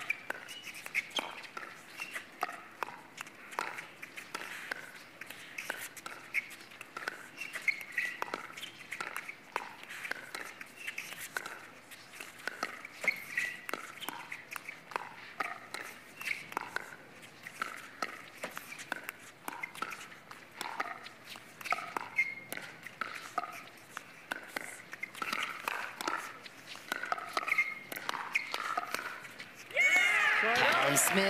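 Pickleball rally: paddles repeatedly popping a plastic ball in a long exchange of soft dinks at the net, with voices in the background.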